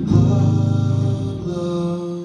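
A man singing long held notes: a low one first, then a higher one about a second and a half in.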